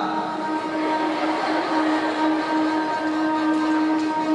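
Live orchestra holding a sustained chord: a long low note and a higher note held steady over a soft, hazy wash of sound.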